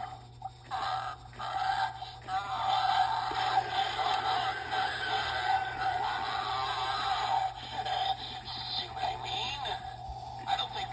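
2007 Magic Power 3 ft Heads Up Franky animated Halloween prop singing its prerecorded song with music through its built-in speaker, a synthetic-sounding voice with a wavering pitch, as the repaired prop runs through its routine.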